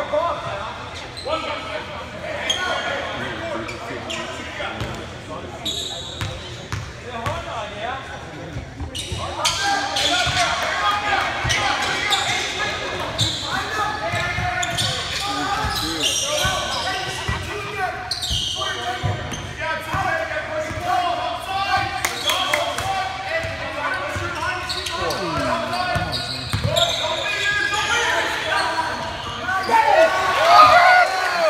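Basketball bouncing on a hardwood gym floor during play, with indistinct chatter from spectators and players echoing around the gym; the voices grow louder about a third of the way in.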